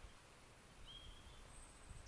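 Near silence: faint outdoor ambience, with one brief, faint high call about a second in.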